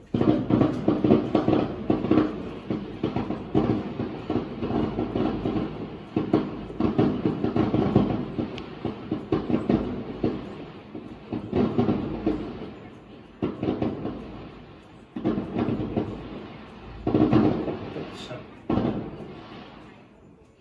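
Fireworks going off in rapid volleys of bangs and crackles, muffled through window glass. Fresh volleys start suddenly several times, each dying away before the next.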